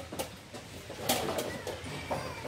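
A few sharp clicks and knocks, the loudest about a second in, of chess pieces and clock buttons at nearby blitz boards.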